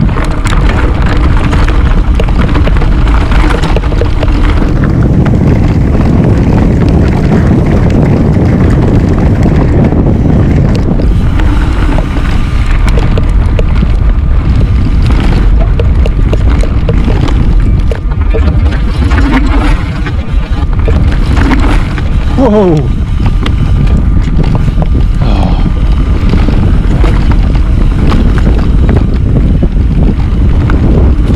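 Wind buffeting the action camera's microphone over the rumble of a Trek Remedy full-suspension mountain bike's tyres and frame on a fast dirt singletrack descent, loud and continuous with frequent knocks and rattles from the trail.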